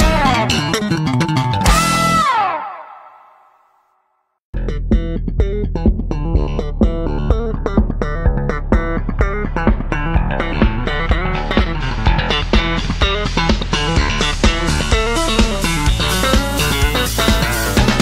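Background music fades out within the first few seconds. After a brief silence, another track with a steady beat starts about four and a half seconds in.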